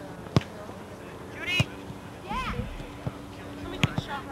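A soccer ball being kicked on grass, four sharp thuds over a few seconds, the loudest soon after the start and near the end, with children's high shouts in between.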